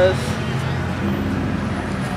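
Steady outdoor city background between words: a constant hum of traffic and street noise.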